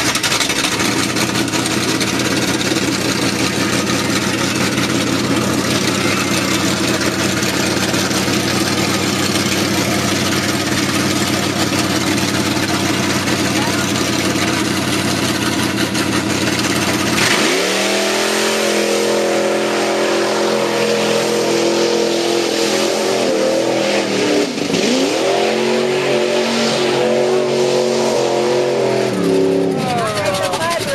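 Lifted mud bog pickup truck's engine running steadily at the start line, then revved hard a little past halfway as the truck launches into the mud pit. It is held at high revs with one brief dip and re-rev, and drops off near the end.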